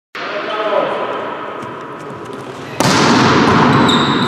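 Volleyball match in an echoing sports hall: players' voices and ball impacts, with the noise jumping sharply louder about three seconds in and staying loud. A thin high tone starts just before the end.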